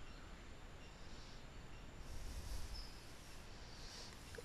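Faint room tone and microphone hiss, with a slight swell in the low noise about two seconds in.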